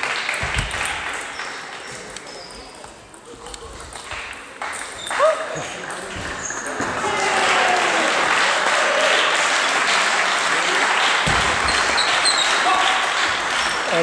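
Table tennis balls clicking off bats and tables in a reverberant sports hall, with players' voices and shouts. There is a sharp loud hit about five seconds in, and from about halfway on a long, loud stretch of crowd noise.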